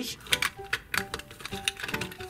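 Hard plastic toy parts clicking and knocking irregularly as a Playmobil cannon barrel is pushed and wiggled against its carriage mounts, not yet seating.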